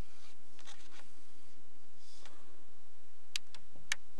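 Hand sewing: needle and thread drawn through a woven fabric label and a fluffy microfiber-yarn knitted coaster, giving soft scratchy rustles. A few small sharp clicks come near the end.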